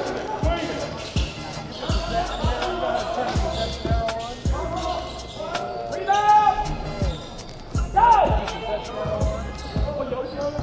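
A basketball being dribbled on a hardwood gym floor, a bounce every half second or so. Sneaker soles squeak on the floor about six and eight seconds in.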